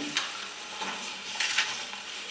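Press photographers' camera shutters clicking over a steady hiss, heard through a television's speaker: one click near the start and a short burst about a second and a half in.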